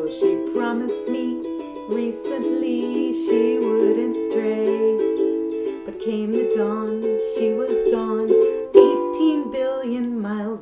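A woman singing a comic song to her own strummed ukulele accompaniment.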